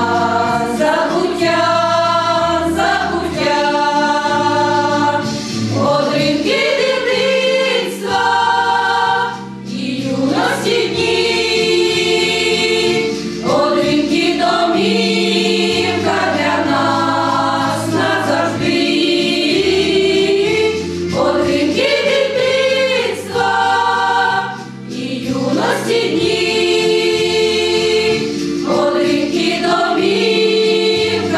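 A Ukrainian women's folk choir singing a song in long held notes, phrase after phrase with short breaks for breath.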